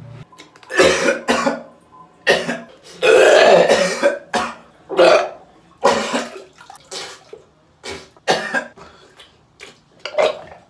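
A young man retching and gagging over a toilet, about ten harsh heaves roughly a second apart, with one longer, drawn-out heave about three seconds in. It is the stomach upset from eating an extremely hot Carolina Reaper chip.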